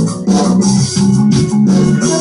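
Live rock band playing a steady instrumental backing, with sustained keyboard chords over bass and drums.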